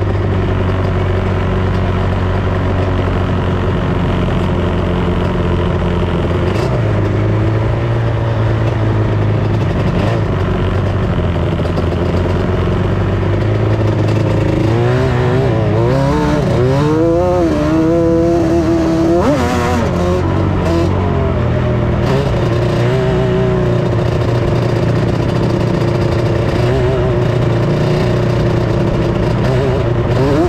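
Off-road vehicle's engine running steadily while driving over sand dunes. About halfway through it revs up and down for several seconds, its pitch wavering.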